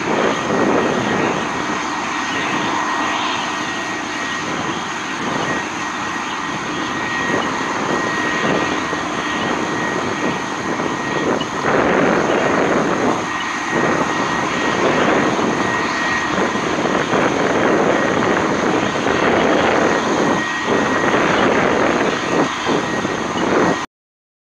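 Firefighting hose nozzles spraying water onto a burning fuel fire: a loud, continuous rushing roar that swells and dips irregularly, with a faint, high, steady whine through most of it.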